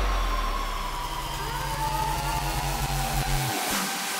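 Electronic dance music breakdown: a synth tone slides slowly down in pitch over a held bass note. The bass cuts out about three and a half seconds in.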